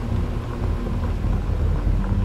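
Low, steady rumble of an SUV's engine and tyres as it drives along a dirt road, under a low, tense film-score drone.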